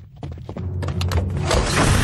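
Cartoon sound effects: a quick series of clicks and clunks, then a loud rushing noise with a deep rumble that swells from about halfway through.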